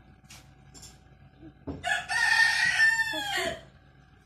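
A rooster crowing once, a single long call of nearly two seconds starting just before halfway through, held level and then falling in pitch at the end.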